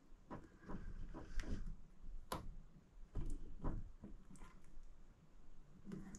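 Faint, irregular clicks and taps of small metal parts as a retaining clip is worked onto the drive-gear shaft of a Tecumseh 37000 snowblower starter motor, the loudest click about two seconds in.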